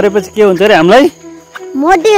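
A boy's high-pitched voice talking loudly for about a second, a short pause, then talking again near the end, over a steady high insect buzz from crickets.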